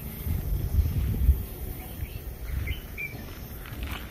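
Outdoor ambience: an irregular low rumble on the microphone, strongest in the first second or so, with a few faint high bird chirps near the end.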